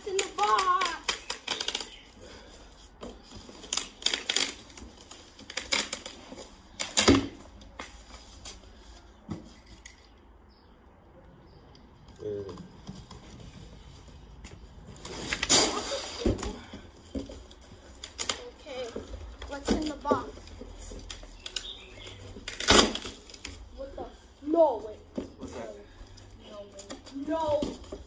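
A large cardboard box being pulled open and handled: several sharp knocks and scrapes of cardboard, with short bursts of low voices now and then.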